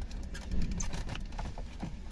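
Irregular light clicks and knocks of a plastic steering-column trim panel being handled while its meter-trip switch connector is worked loose.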